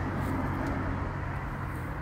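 Steady low outdoor background drone, like distant motor traffic, with a constant low engine-like hum.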